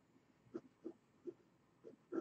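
A house cat making four faint, short calls, a few tenths of a second apart, trying to get attention.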